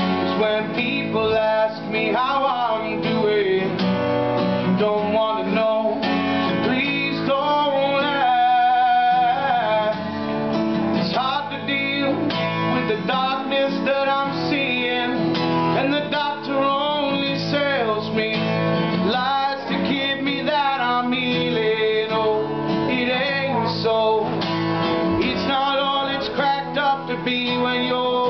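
A man singing with a strummed acoustic guitar, a live solo song.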